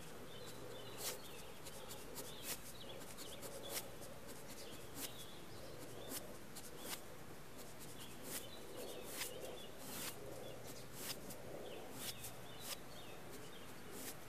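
Fine-tip Pigma Micron ink pen working on watercolor paper: faint scratching with an irregular light tick each time the tip touches down to dot and stroke in details. Faint bird chirps sound in the background.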